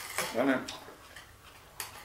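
Cutlery clicking against a plate as a knife and fork cut food: one sharp click at the start and another near the end.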